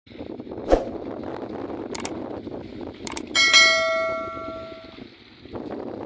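Subscribe-button overlay sound effect: two quick mouse-click sounds followed by a bright bell ding that rings out and fades over about a second and a half. Underneath runs a steady rush of water and wind, with a single knock about a second in.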